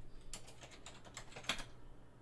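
Typing on a computer keyboard: a run of quick key clicks, with one louder click about one and a half seconds in.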